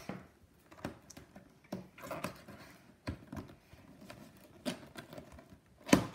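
Doll packaging being handled and opened: irregular clicks, taps and light scrapes, with a sharper click near the end.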